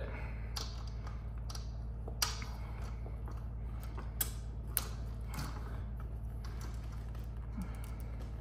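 Light, irregular metal clicks and taps as a small stamped-steel open-end wrench is fitted to and turned on a nut on a lamp's threaded pipe inside its metal fitting, tightening it a little. A faint low hum runs underneath.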